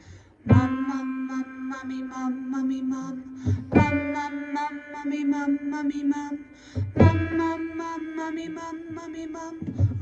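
A woman singing a 'mum, mummy' vocal warm-up on a held note, in three phrases that each start a step higher than the last. It demonstrates the middle stage of the exercise, sung with the mouth a little more open than a hum.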